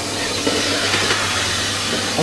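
Dometic central vacuum system running, a steady rushing hiss of air drawn through the hose with a low hum beneath it.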